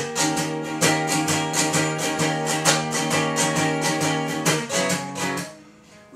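Acoustic guitar with a capo, played in a steady rhythm of even strokes over ringing chords. The playing tails off and fades out near the end.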